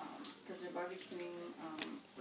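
Faint, quiet speech in the background, with one sharp click near the end.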